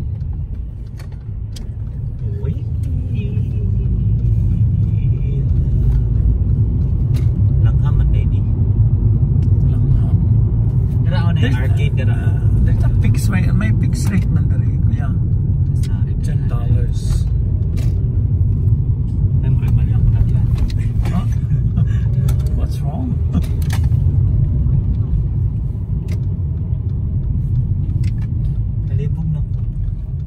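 Steady low rumble of road and engine noise inside a moving car's cabin, with indistinct voices at times.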